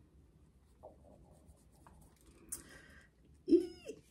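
Pen writing on a small slip of paper, a faint scratching with a few small ticks. Near the end, a short hummed sound from a woman's voice.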